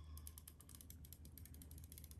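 Faint, rapid clicking of a hand-held adhesive tape runner as it is drawn around the edge of a circle cut in cardstock, laying down a strip of adhesive.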